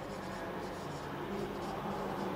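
Marker pen writing on a whiteboard: a run of short rubbing strokes over a steady low background hum.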